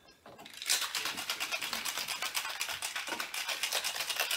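Ice rattling hard in a metal cobbler cocktail shaker as a margarita is shaken, a fast, steady rattle that starts just under a second in.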